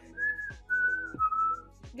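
A person whistling three short notes, the last a little lower in pitch.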